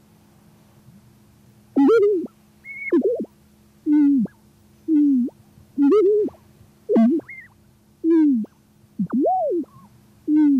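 Sound installation playback: a run of short pitched, gliding electronic tones, each swooping up or down, about one a second, starting about two seconds in, over a steady low hum.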